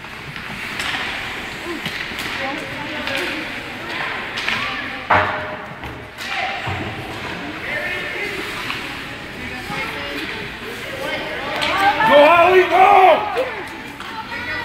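Ice rink game sounds in a large echoing arena: a steady wash of skating, stick noise and spectators' voices, with one sharp thud about five seconds in and louder shouting voices near the end.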